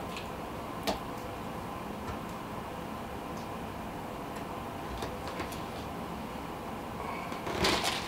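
Steady room hiss with a few small clicks from handling fly-tying tools at the vise, one sharper click about a second in and fainter ticks around the middle.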